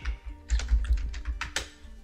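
Computer keyboard typing: a quick run of keystrokes as a short word is typed.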